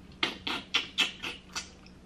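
Close-up wet chewing and lip smacking of a mouthful of green-lipped mussel, about six quick smacks in a steady rhythm.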